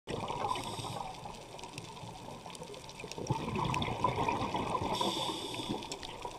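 Muffled underwater water noise, gurgling and crackling, growing louder about three seconds in.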